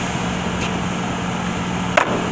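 Steady low hum of shop machinery, with one sharp click near the end as transmission parts are handled on a steel bench.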